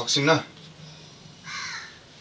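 A short bit of speech at the very start, then a single short bird call about one and a half seconds in.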